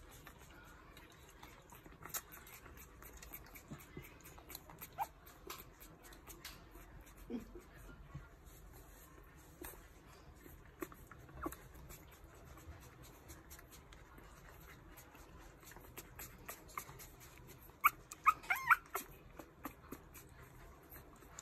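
Newborn puppies nursing, giving faint, high-pitched squeaks and whimpers amid scattered soft clicks; a quick run of louder squeaks comes near the end.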